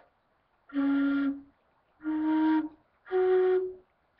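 End-blown flute in the key of A playing three separate held notes, each a step higher than the last, as finger holes are lifted one at a time going up the scale.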